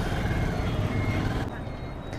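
Yamaha R15 V2's single-cylinder engine running as the motorcycle rides through street traffic, with the surrounding traffic noise; the sound drops in level about a second and a half in.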